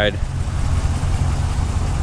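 2014 Ram 1500 pickup's engine idling: a steady low rumble.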